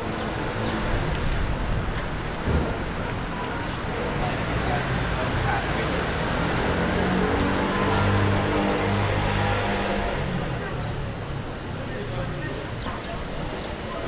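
Town street ambience of road traffic, with a vehicle engine growing louder and then fading about halfway through.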